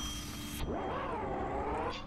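A cartoon character's pitched, meow-like vocal sound effect, starting about half a second in and swooping up, dipping and rising again over about a second and a half, over a faint steady high tone.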